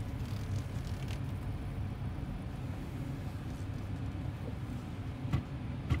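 2018 Nissan Frontier's V6 engine running, a steady low rumble heard from inside the cab. One or two short clicks come near the end, as the gear selector goes into reverse.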